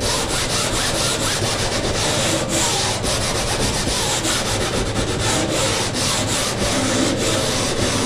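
Hand sanding with 120-grit sandpaper on a pad, scuffing the cured fiberglass rail of a foam board: quick back-and-forth rasping strokes, one after another. The scuffing smooths the rough glass edge and roughens the surface so the next layer of fiberglass bonds to it.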